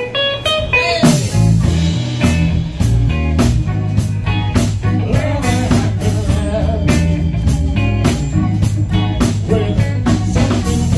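Live band playing: drum kit, electric bass, keyboard and guitar. A short melodic lead-in over drum hits gives way about a second in to the full band with a strong bass line, then a steady groove.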